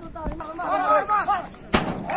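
Men shouting and calling out in overlapping, drawn-out cries over an outdoor crowd, with one sharp bang near the end that is the loudest sound.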